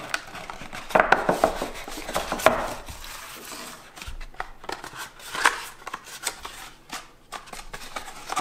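Hands handling cardboard packaging: a box's inner tray lifted out, the box set down on a wooden table, and a small cardboard sleeve box slid open. Scattered taps, scrapes and rustles, busiest about a second in and again around five and a half seconds.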